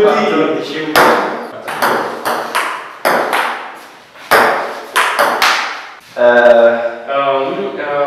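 Table tennis rally: the ball clicking off paddles and table, about ten hits at an uneven pace over the first six seconds, each ringing briefly in the room. Near the end a person's voice calls out, held for nearly two seconds.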